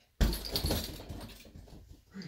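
A bare-knuckle punch lands on a heavy punching bag about a fraction of a second in, followed by the bag's hanging chain jingling and rattling as it swings and slowly settles. The fitting at the top of the bag is loose, so it jingles more than normal.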